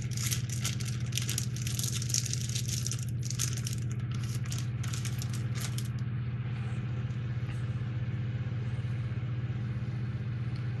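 Crinkling and rattling as a small toy-boat motor is handled and pulled out of its packing, for about the first six seconds, then only a steady low hum in the background.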